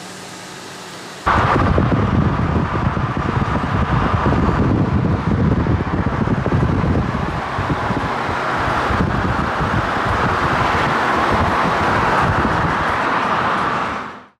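Heavy wind buffeting on the microphone mixed with car and road noise, starting abruptly about a second in and staying loud and steady, as when filming from a moving car.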